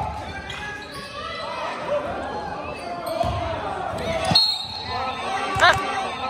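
Basketball game on a hardwood gym floor: the ball bouncing and sneakers squeaking on the court, echoing in the hall over crowd voices, with a louder squeak and knock near the end.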